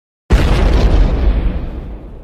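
Volcano eruption explosion sound effect: a sudden loud, deep boom about a third of a second in, followed by a heavy rumble that slowly fades.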